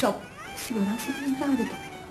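A person's voice speaking, its pitch rising and falling in short broken phrases.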